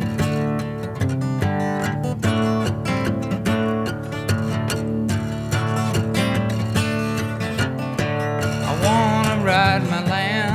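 Solo acoustic guitar strummed in a steady rhythm during an instrumental break between sung lines. Near the end a held note with a wavering pitch comes in over the strumming.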